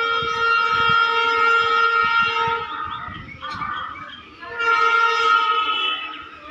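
Train horn sounding twice: one long, steady blast of about three seconds, then after a short gap a second, shorter blast near the end.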